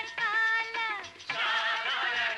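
Bengali film song: a high sung note held for about a second, then the music fills out into a thicker, busier passage about halfway through.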